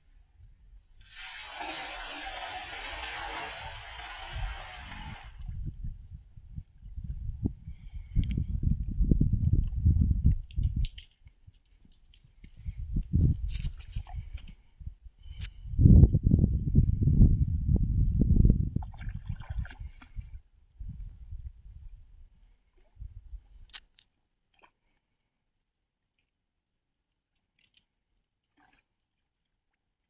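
A cast net landing on creek water: a hissing, spattering splash lasting a few seconds. It is followed by uneven bursts of low rumbling noise, loudest about halfway through, which stop suddenly a few seconds before the end.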